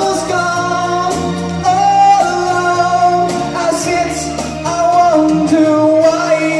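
Male singer holding long notes into a microphone, changing pitch every second or so, over a backing track with bass and a drum beat, played loud through a PA in a large hall.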